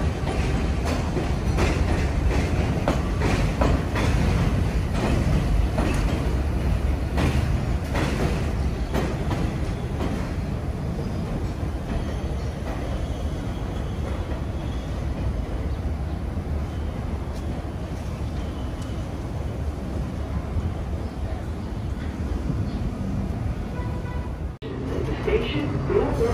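Vintage Redbird subway train pulling away along an elevated steel line, its wheels clicking over the rail joints with a rumbling clatter, getting quieter as it moves off.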